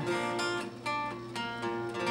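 Acoustic guitar strummed, a few chords ringing out without the voice.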